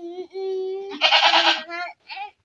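Nanny goat bleating: one drawn-out call that starts steady and breaks into a quavering bleat about a second in.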